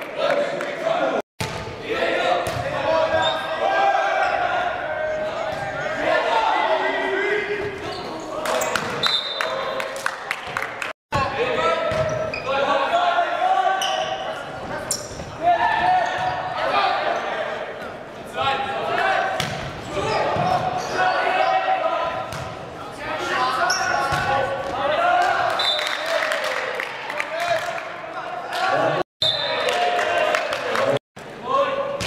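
Volleyball rally in a gymnasium: the ball is struck and slaps the hardwood floor several times, under a steady mix of players' and spectators' voices that echo in the hall. The sound cuts out completely for an instant twice, about a second in and about eleven seconds in, and again near the end.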